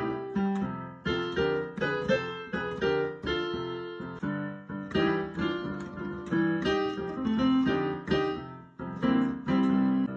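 Piano played with both hands: blues chords and bass notes struck in a steady rhythm, each one dying away.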